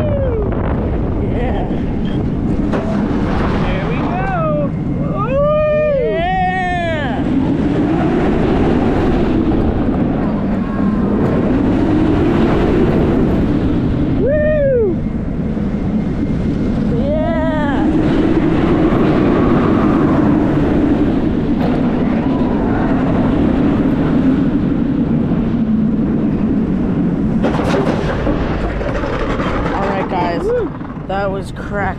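Wind rushing over the microphone and the rumble of a B&M floorless roller coaster train running at speed, steady and loud throughout. Riders yell out several times: a cluster about five to seven seconds in, then single cries around fifteen and seventeen seconds.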